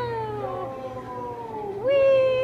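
Toddler crying in long, drawn-out wails that slide down in pitch, with a new, louder wail rising in just before the end.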